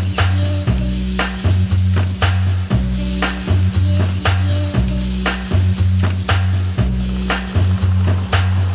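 Background music: a steady beat with a deep, pulsing bass line and sharp regular drum hits, no singing.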